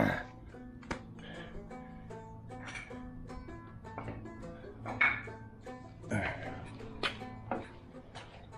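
Background music with a steady low tone and a simple melody, and a few short knocks and clunks from the axle mockup parts being shifted by hand.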